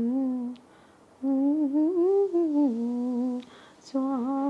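A woman humming a melody without words in long, held notes, in two phrases with a short pause between.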